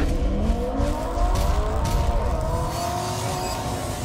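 Car engine revving sound effect, held high with its pitch climbing slowly.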